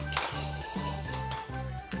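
Background music with a steady, evenly pulsing bass line, opening with a short bright splash of noise.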